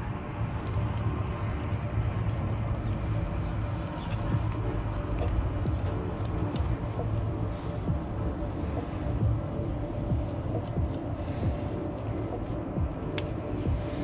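Steady low rumble of outdoor background with a few faint light clicks and ticks scattered through, as the metal plates of a bicycle quick link and the chain are handled and fitted together.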